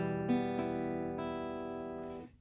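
Acoustic guitar playing an E minor chord. Its notes are struck near the start and again just after, then left ringing and slowly fading.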